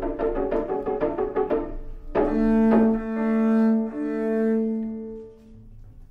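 Double bass playing a quick run of notes, then long held notes that ring and fade away about five and a half seconds in.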